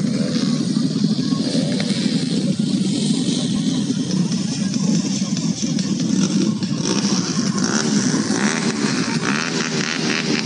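Motorcycle engines running steadily, a continuous low drone with no clear revving.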